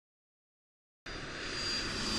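Jet airliner engine sound effect: after silence it comes in suddenly about halfway through, a rushing noise with a steady high whine, growing louder.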